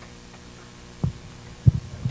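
Handheld microphone being handled: two short low thumps, about a second in and again near the end, over a steady room hum.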